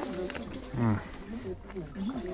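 People talking, with a low, drawn-out falling vocal sound about a second in.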